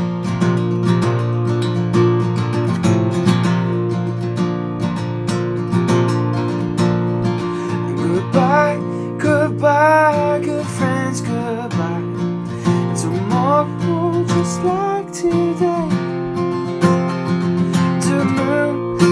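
Acoustic guitar strummed steadily, with a man singing along; the sung melody stands out most clearly in the middle of the stretch.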